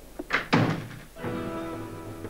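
Two heavy thuds close together, the second the louder, followed about a second in by a held, ominous music chord of a drama score.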